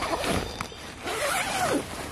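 Tent door zipper being pulled open, in two pulls with a short pause between them.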